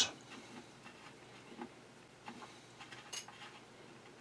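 Faint, scattered small metal clicks and ticks as a threaded collar on the hook drive of a Singer 66 sewing machine is turned off by hand, the clearest click about three seconds in.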